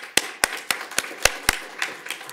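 Sparse applause from a small audience: a few people clapping, heard as separate, irregular claps at about three to four a second.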